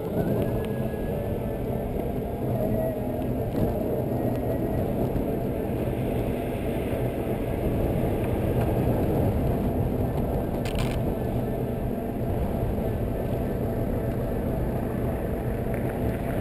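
Steady rumble of a Solowheel electric unicycle rolling over wet asphalt, heard through a camera vibrating on its mount, with a faint rising whine in the first second. A brief click about eleven seconds in.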